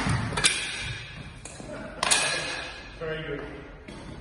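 Steel sidesword and buckler clashes during sparring: three sharp metallic strikes, one at the start, one about half a second later and one about two seconds in, each ringing briefly and echoing in a large hall.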